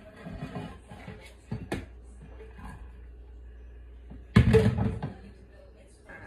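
Kitchen handling sounds as a skillet of browned ground meat is drained: scattered light knocks, a sharp click a little under two seconds in, and a louder noisy clatter lasting under a second at about four and a half seconds.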